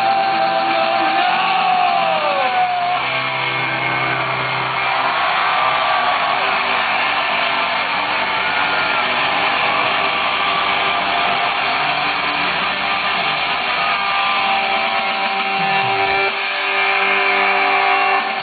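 Live punk rock band playing loud electric guitars through a festival PA, recorded from inside the crowd, with the audience cheering and clapping along.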